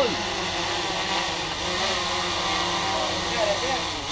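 Small quadcopter drone's motors and propellers whirring steadily in flight.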